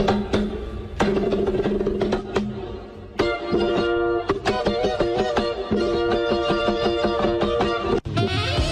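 Acoustic guitar being played: chords struck and left ringing, with the playing growing fuller and busier from about three seconds in.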